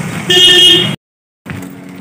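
A vehicle horn honks once, a loud pitched blast about half a second long, over the noise of street traffic. The sound then cuts off suddenly.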